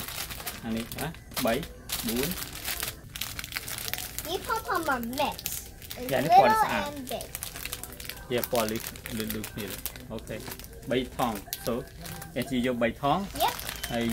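Clear plastic bags of craft pom-poms and beads crinkling as they are handled over a shopping cart, with voices talking throughout; the loudest moment is a rising-and-falling voiced sound about halfway through.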